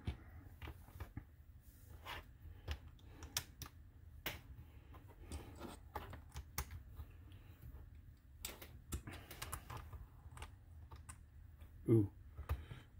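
Plastic Lego bricks clicking and clattering as they are handled and pressed together on a cutting mat: small, irregular clicks, with one louder knock near the end.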